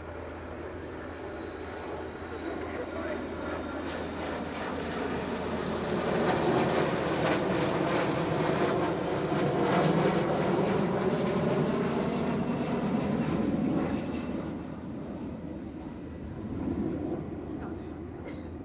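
Jet engines of a formation flypast, a large four-engine jet with three fighter jets, swelling to a loud, steady noise overhead about six seconds in. Its pitch sweeps down as the formation passes, and the noise fades after about fourteen seconds.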